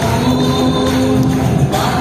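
A congregation singing a gospel worship song together over instrumental accompaniment, with long held notes.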